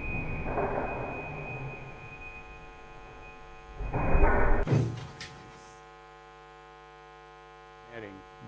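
MIT Cheetah quadruped robot jumping onto a desk, its soundtrack played over the hall's speakers: rushes of noise with a thump about four seconds in as it lands. The sound then cuts off suddenly, leaving a steady electrical hum.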